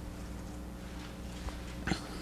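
Quiet room tone with a steady low hum, a faint click about one and a half seconds in, and a short, louder noise just before the end.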